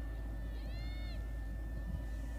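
A brief, faint, high-pitched call about half a second in, rising and then falling in pitch, heard over low steady field ambience.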